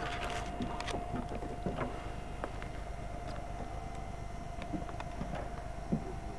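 A steady mechanical hum with one unchanging high tone, with wind on the microphone and scattered light clicks.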